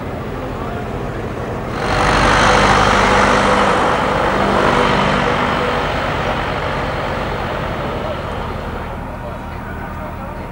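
A vehicle engine running close by, rising suddenly about two seconds in and fading slowly over the following several seconds, over background chatter.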